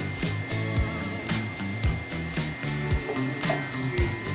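Background music with a beat and sustained low notes.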